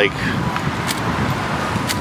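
Steady low rumble of road traffic passing on a city street, with a couple of faint clicks.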